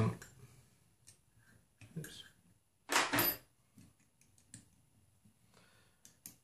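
Scattered light clicks and taps of small metal hardware being handled as a lock nut is turned onto a threaded rod holding a bearing between fender washers, with one louder brief sound about three seconds in.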